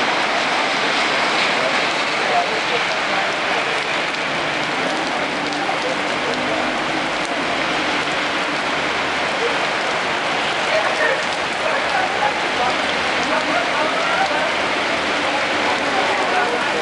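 Very heavy rain pouring onto a wet paved street and pavement: a dense, steady hiss.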